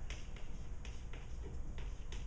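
Chalk tapping and scratching on a chalkboard in short, irregular strokes while someone writes, several clicks a second over a low room rumble.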